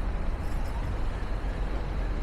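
Outdoor city ambience: a steady low rumble of road traffic.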